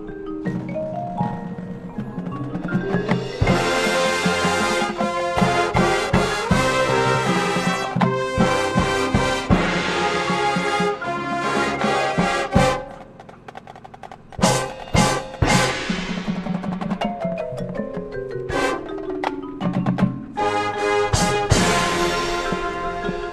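A high school marching band playing its field show: marimbas and other mallet percussion play running lines, the full band comes in about three seconds in, drops away suddenly about halfway through to a few sharp accented hits and more mallet runs, and the full band returns near the end.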